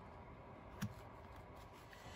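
Faint handling of a paper journal page, with one soft tap a little under a second in.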